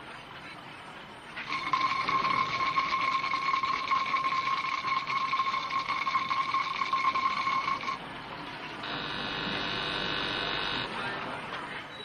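A loud buzzing, ringing tone with a fast rattle through it starts about a second and a half in and cuts off suddenly after about six seconds. About a second later a softer steady tone of several pitches sounds for about two seconds.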